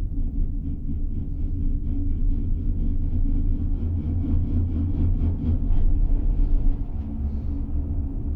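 Monocable gondola cabin running along the haul rope with a steady low rumble. Over it comes a rhythmic clatter of about three to four clicks a second as the cabin's grip rolls over a tower's sheave wheels, building to its loudest about six seconds in.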